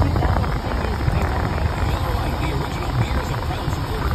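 Low, uneven rumble of a car running, heard inside the cabin, with indistinct radio talk from the car's speakers.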